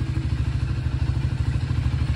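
A Triumph Scrambler 400 X's single-cylinder, liquid-cooled engine idling in neutral with a steady, even low pulse.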